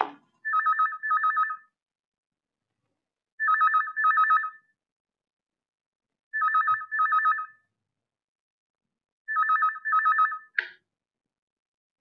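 Telephone ringing with a warbling electronic trill in the double-ring pattern, four double rings about three seconds apart, then a brief clack near the end as the handset is picked up.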